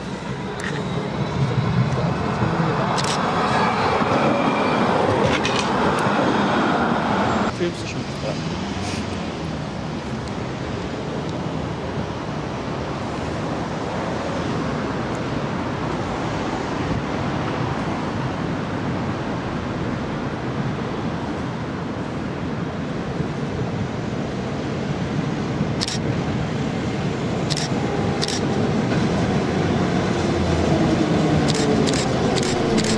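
Rolling noise of an approaching tram, echoing under a concrete overpass, that breaks off abruptly about seven seconds in. Then steady road-traffic noise, with a few sharp clicks near the end as an old tramcar draws near.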